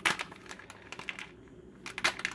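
Plastic minifigure blind bag crinkling as it is handled and pulled at to tear it open by hand, with scattered crackles, a sharp one at the start and another at the end.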